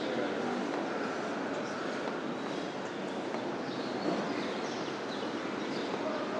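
Steady outdoor city background noise, an even wash of distant traffic-like sound, with a few short high bird chirps scattered through it.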